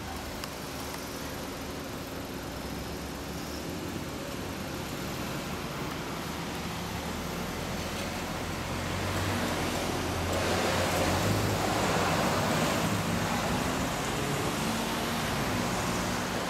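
Suzuki GSX250SS Katana's parallel-twin engine idling steadily through a Moriwaki aftermarket exhaust, with louder noise swelling about ten seconds in.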